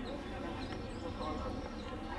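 Faint outdoor background ambience with distant voices, steady and without any distinct event.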